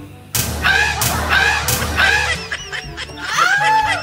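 Shrill, goose-like honking cries: a quick run of short ones, then two longer rising-and-falling honks near the end, over background music. Three sharp knocks come about half a second apart near the start.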